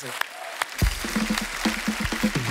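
Studio audience applauding, with music and a bass beat coming in under the clapping just under a second in.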